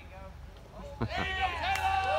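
Mostly speech: after a quiet first second, a man finishes a question with a laugh about a second in. Near the end, high-pitched voices start a long, held shout.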